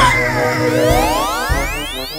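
Background music with a cartoon sound effect: a long glide rising steadily in pitch, starting about halfway through.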